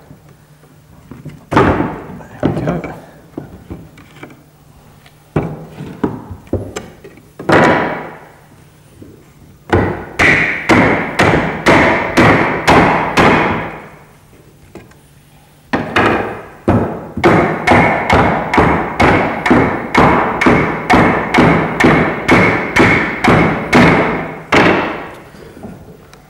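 Wooden mallet striking the rails and joints of an old maple dining chair to knock the glued joints apart. A few scattered blows come first, then two long runs of quick, even strikes, about two to three a second.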